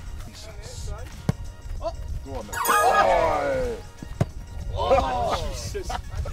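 Men's voices calling out and exclaiming over background music, with a couple of short thuds.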